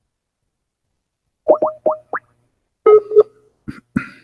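Internet-call app tones as an outgoing call is placed: four quick rising bloops, then a two-note ringing chirp about three seconds in, with a couple of short clicks near the end.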